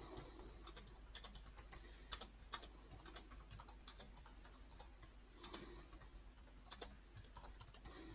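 Faint, irregular clicks of typing on a computer keyboard, with a soft breath about five and a half seconds in.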